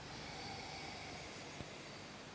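A quiet sip of beer from a glass. Mostly faint, steady hiss, with one soft tick about one and a half seconds in.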